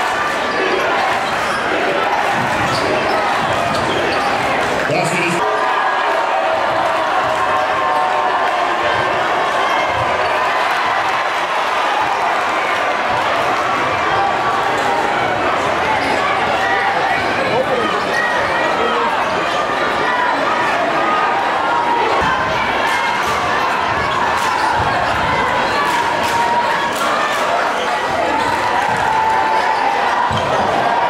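A basketball dribbling on a hardwood gym floor, short knocks repeating through a steady din of crowd chatter echoing in the gymnasium.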